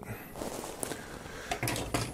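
Plastic model-kit runners being handled on a tabletop: a faint rustle with a few small, light clicks.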